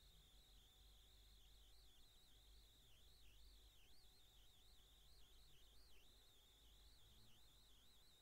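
Near silence: faint background hiss with a thin, high whine that wavers in pitch.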